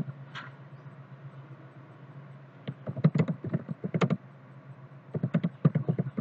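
Typing on a computer keyboard in quick runs of keystrokes: a burst at the start, a pause of about two seconds, then runs of keys from about three seconds in and again near the end, over a steady low hum.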